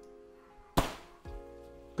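A single sharp snap about a second in as an eight-rib automatic folding umbrella's mechanism collapses the open canopy, followed by a smaller knock. Background music plays steadily underneath.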